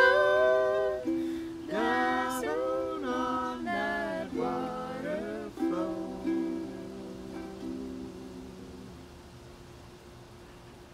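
Ukulele and singing voices closing a folk song. A held sung note ends about a second in, the ukulele plays a few more notes, and a last ukulele chord rings and dies away by about nine seconds.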